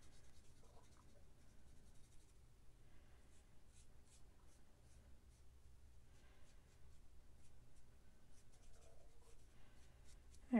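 Faint scratching of an alcohol marker's nib colouring on cardstock, in short repeated strokes.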